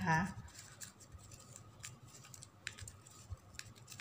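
Faint crinkling and a few short, sharp clicks of glossy ribbon being pulled tight through the woven loops of a folded ribbon ornament.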